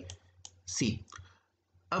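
A single sharp computer-mouse click, with a man's voice saying a short word just after it.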